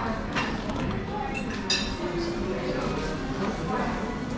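Restaurant background: other diners' voices talking indistinctly, with one short ringing clink of tableware about a second and a half in.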